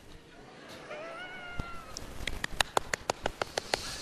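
A high, drawn-out vocal call lasting about a second, followed by a quick, even run of about ten handclaps that lasts a second and a half.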